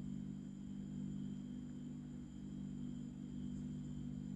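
Quiet steady low hum with a faint steady high whine above it, room tone with no distinct event; the crochet hook and yarn make no clear sound.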